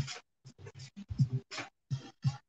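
Scratching and rubbing on a hard surface, about ten short strokes in quick, uneven succession.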